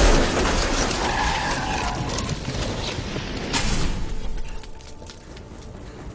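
Movie crash sound effects of a car flipping onto its roof: a loud impact at the start, then about three seconds of scraping metal and clattering debris as it slides. Another sharp hit comes near the end of that, and the noise then drops away.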